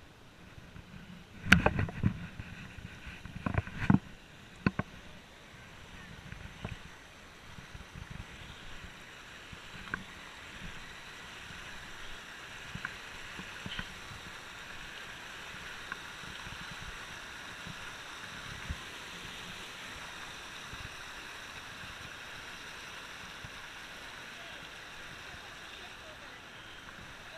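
Creek water rushing over rocks, a steady sound that grows louder about six seconds in and then holds. A few sharp knocks stand out in the first few seconds.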